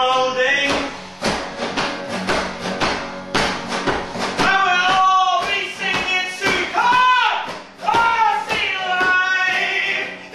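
Acoustic guitar hit and strummed in quick, sharp strokes, then a man singing long, arching wordless notes over the guitar.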